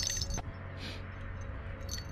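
Ice-fishing tip-up with bells being handled and set over the hole. There is light metallic jingling ending in a click about half a second in, then a brief rustle and a few small clicks near the end.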